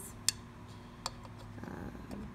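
Two light clicks of a long steel screw being handled against a sewing machine's metal top cover, the first and louder about a quarter second in, the second about a second in, with a few faint ticks near the end over a faint steady low hum.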